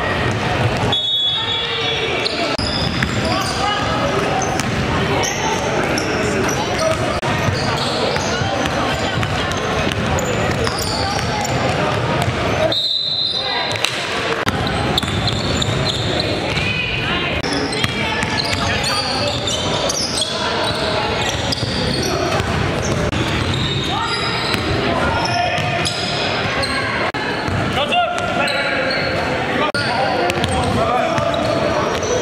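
Live indoor basketball game sound in a large gym: a basketball bouncing on the court amid players' voices and calls echoing around the hall. The sound breaks off briefly twice at edit cuts.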